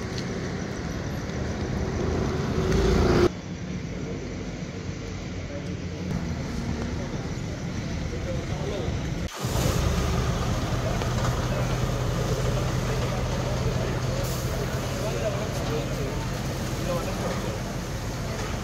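A fire engine's engine running steadily, with people talking in the background.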